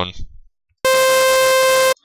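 A single synthesizer note held dead steady for about a second, a buzzy, overtone-rich tone that starts and stops abruptly. It is the synth track played on its own, with the vocal muted, as the carrier for a vocoder.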